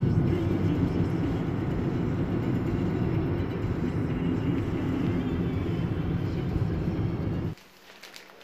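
Steady road and engine noise heard from inside a moving car, heaviest in the low rumble, cutting off suddenly near the end.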